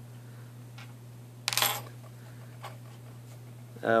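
A small piece of metal jewelry, a rhinestone earring, clatters briefly onto a hard tabletop about a second and a half in, with a short metallic ring.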